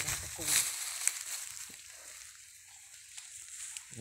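Dry grass and stalks rustling and crackling as they are pushed aside, loudest in the first second, then faint outdoor quiet with a few light clicks.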